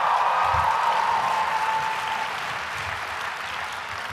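A large audience applauding, the applause slowly dying down, with a steady high tone under it that fades out about halfway through.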